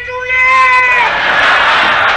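A high, drawn-out whining vocal from a performer on stage, held for about a second, then a theatre audience applauding loudly.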